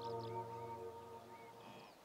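Soft background music holding a sustained chord that fades out, with a few faint high chirps above it.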